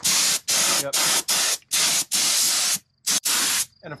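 Compressed-air spray gun spraying in about eight short bursts with brief gaps, as the trigger is pulled and released.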